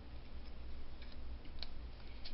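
Low steady hum with a few faint, light ticks from hands handling paper and craft supplies on the desk.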